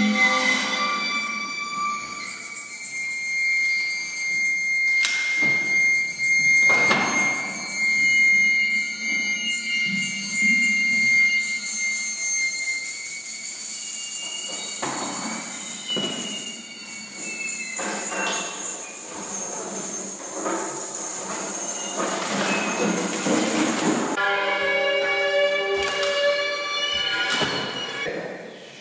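Experimental music performance: a steady, high squealing tone held for about ten seconds over a continuous high hiss, broken by a few sharp knocks, with a lower pitched, buzzing sound in the last few seconds.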